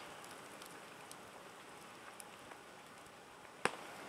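Wood campfire burning: a faint steady hiss with scattered small crackles, and one sharper pop shortly before the end.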